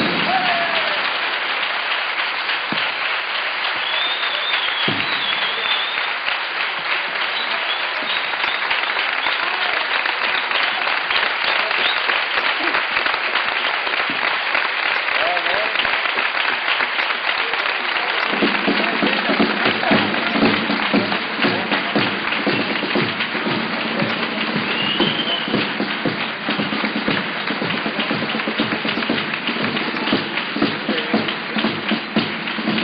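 Theatre audience applauding steadily at the end of a comparsa's performance, with a few whistles and shouts; about two-thirds of the way through, music with a steady low tone starts up under the applause.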